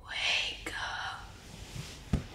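A breathy whisper lasting about a second, with a faint click partway through.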